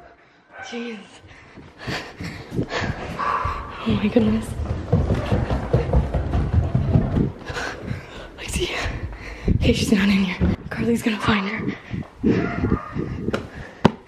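Muffled, unintelligible voices and breathing, mixed with rumbling, rustling and knocks from a camera being carried and swung around by hand.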